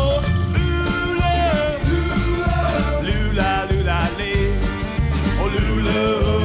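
Background music: an upbeat song with a steady bass beat and a melody line.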